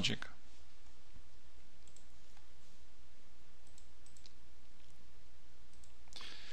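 Steady low hum of the recording's background noise, with a few faint clicks about two and four seconds in.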